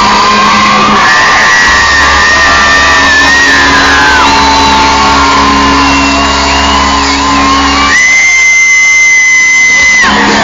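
Live rock band playing loud through a concert PA, recorded on a phone, with audience shouts and whoops. About 8 s in, the low end drops out, leaving one long high held note.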